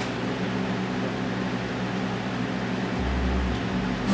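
Steady electrical hum and hiss from the room's amplifiers and PA, with a low rumble coming in about three seconds in.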